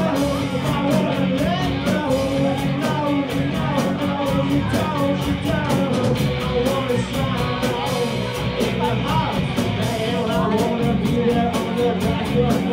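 Live rock band playing a song on stage: electric guitars, drum kit and keyboard, with a steady beat of about four cymbal or drum strokes a second.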